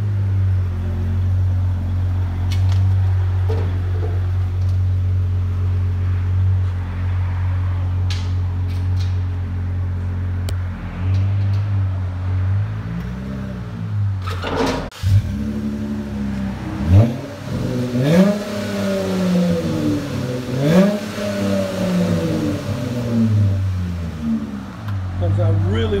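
2016 Dodge Charger SXT's 3.6-litre V6 running through a Flowmaster Super 44 muffler with the rear resonators deleted, idling steadily with a deep tone. In the second half it is revved in several short blips, each rising and falling in pitch.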